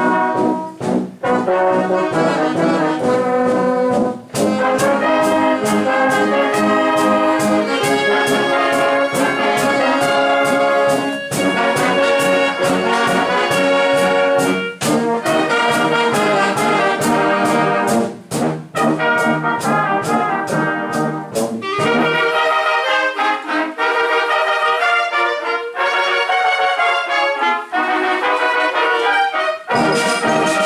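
Brass band with drums playing a piece in full: trumpets, euphoniums and tuba holding chords over a steady drum beat. About two-thirds of the way through, the low brass and drums drop out and lighter, higher parts carry on.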